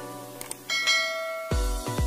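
Two quick clicks, then a bright bell-like ding that rings on and fades: the notification-bell sound effect of a subscribe-button animation. About three-quarters of the way through, an electronic dance beat with heavy bass kicks in.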